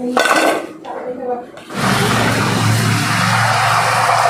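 A brief clatter as fried pakoras are tipped from a perforated steel skimmer onto a steel plate. About two seconds in, a steady sizzle begins from a kadai of hot oil with pakoras deep-frying in it.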